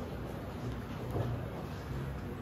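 Whiteboard eraser wiping across the board in irregular strokes, over a steady low room hum.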